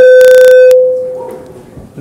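Microphone feedback: one loud, steady howl that distorts at its peak, then fades away over about a second.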